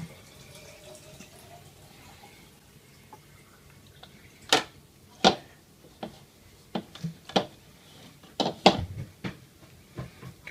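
Boiled lasagna noodles being peeled apart and laid into a metal baking pan: after a few quiet seconds, a string of about eight short, sharp smacks and clicks.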